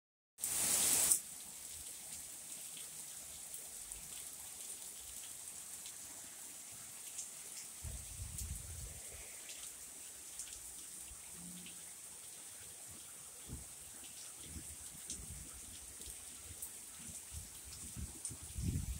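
Steady rain falling, an even hiss with scattered individual drips ticking on nearby surfaces. A brief louder rush of noise at the very start, and a few low rumbles about eight seconds in.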